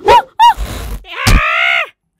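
An animated character's wordless voice: two short strained grunts, then a longer groan, with a sharp thump partway through.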